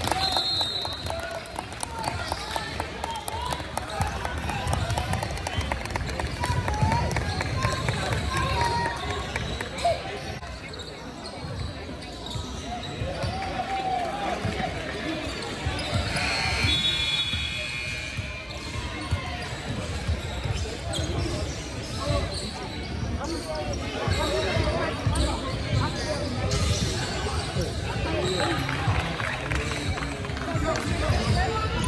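A basketball bouncing on a hardwood gym floor during play, with players' and spectators' voices carrying in the large gym. A brief high-pitched squeal comes about two-thirds of the way through.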